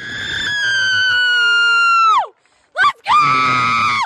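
A person's loud, high-pitched cheering screams: one long held scream that drops in pitch at the end, a short rising yelp, then a second scream that also falls away.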